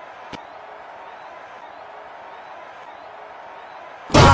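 Steady background hiss of a room recording, with one sharp click about a third of a second in.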